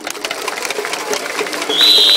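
A stadium crowd of baseball fans clapping fast and building in loudness, with a steady high whistle starting near the end.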